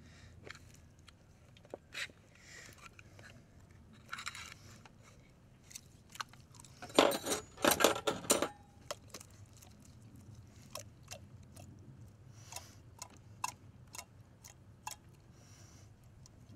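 Small tin can being opened with a hand-held can opener: scattered sharp clicks and scrapes as it is worked around the rim. About seven seconds in comes a louder scraping burst lasting a second or so as the can is tipped over a foil pan, followed by a few light taps and scrapes.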